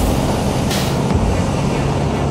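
Honda Click 125i scooter riding at speed: a steady low engine hum under loud wind and road rush, with a brief louder rush just under a second in.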